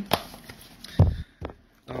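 Handling noise from Magic: The Gathering theme booster packs being swapped in the hands: a sharp click at the start and a louder, short low thump about a second in, then a faint tick.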